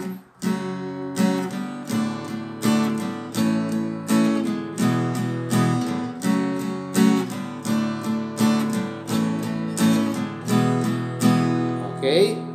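Acoustic guitar strummed with steady down-strokes, three to a chord, about one and a half strums a second, through the chords F-sharp minor, D, A and E.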